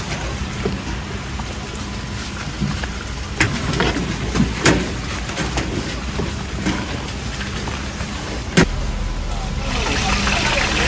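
Gloved hands tossing batter-coated mushrooms in a metal bowl, with a few sharp clicks, over a steady low hum. Near the end hot oil starts to sizzle as the first battered pieces go into the fryer.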